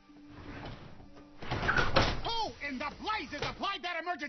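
A rushing noise swells up and breaks into a loud, dense burst about a second and a half in, followed by a voice calling out in short rising and falling cries.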